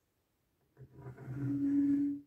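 Rubber tyres of a 1/50 scale diecast mobile crane model scrubbing on a wooden tabletop as the model is turned by hand: a low, steady-pitched groan starting about a second in and lasting about a second and a half.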